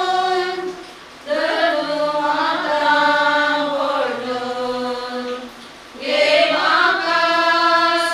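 A small group of voices singing a slow prayer chant together, in long held phrases with short pauses about a second in and near six seconds.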